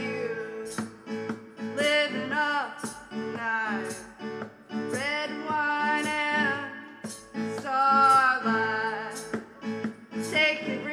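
A woman singing a pop song live, accompanied by guitar and keyboard.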